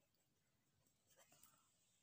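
Near silence, with faint scratching of a pen writing on paper for about half a second in the middle.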